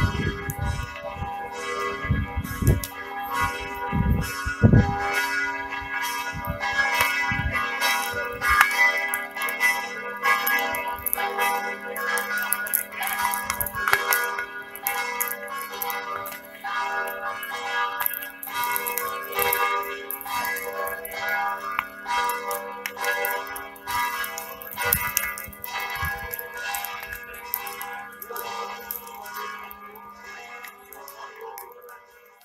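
Church bells ringing in a continuous peal of rapid, overlapping strokes, with a few dull low thumps in the first five seconds.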